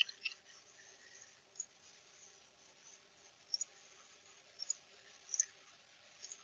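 Computer mouse clicks, a handful of short sharp clicks, several in quick pairs, over a faint steady hum.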